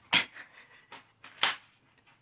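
A child blowing out two short, breathy puffs of air, about a second and a quarter apart.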